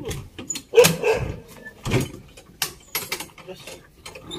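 Metal rear door of a small cargo truck being unlatched and swung open: a series of sharp metal clanks and clicks, loudest about a second in.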